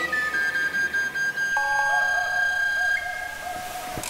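Background film music of long held notes. A lower note joins about halfway through, and the top note steps up near the end.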